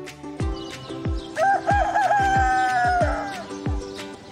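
A rooster crowing once, about two seconds long, starting about a second and a half in: a few short broken notes, then a long held note that drops at the end. Background music with a steady beat plays under it.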